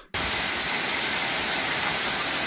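A steady, even hiss of noise across all pitches that starts abruptly.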